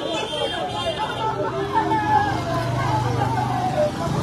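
A motorcycle engine approaching and passing close, its low steady hum growing louder from about a third of the way in, over several people's voices talking in the street.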